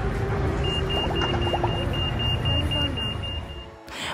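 Busy city street traffic rumbling steadily, with faint voices of passers-by and a high electronic beep repeating about four times a second. The sound drops away near the end.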